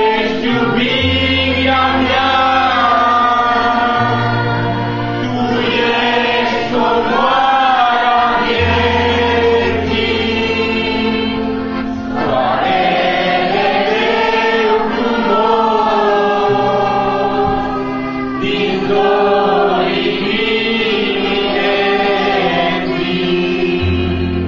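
A group of voices singing a worship song in Romanian together, over an accompaniment of long held bass notes that change every couple of seconds.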